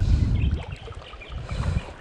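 Wind buffeting the microphone: a gusting low rumble that cuts in suddenly and rises and falls.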